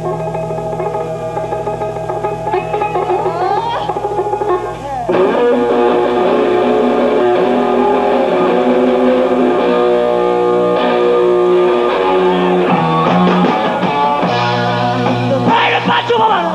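Live blues-rock from a guitar, bass and drums trio, played with no vocals: an electric guitar lead over bass and drums. There is a rising bend about three seconds in, and the band gets louder and fuller about five seconds in.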